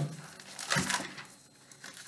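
Thin Bible pages rustling and crinkling as they are leafed through to find a passage, loudest about a second in.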